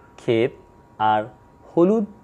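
A man speaking Bengali in three short spoken bursts; speech is the only clear sound.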